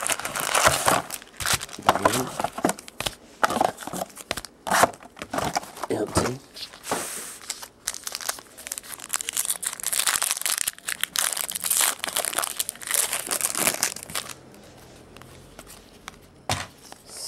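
Trading-card pack wrappers being torn open and crumpled by hand, a dense run of crinkling and tearing that dies away near the end.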